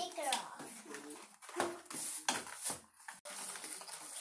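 Scattered clicks and crinkles of plastic and cardboard toy packaging being handled and opened, with brief, quiet children's voices in between.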